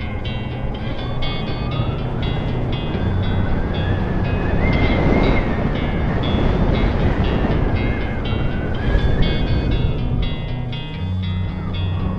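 Background music with repeated plucked notes over a rushing noise and the whine of an electric unicycle's hub motor. The whine climbs in pitch as the wheel speeds up for about five seconds, then falls as it slows.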